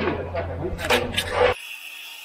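A voice for about the first second and a half, then a sudden change to a walk-behind concrete saw running steadily with a thin whine, cutting a control joint in the fresh slab to control shrinkage cracks.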